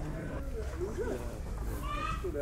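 Sheep bleating, several faint wavering calls, over a steady low hum and background voices.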